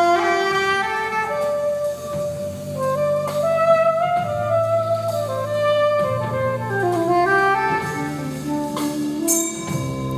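Live jazz combo: a saxophone plays a flowing melodic line over a walking double bass, with keyboard, congas and drums behind it, and a cymbal splash near the end.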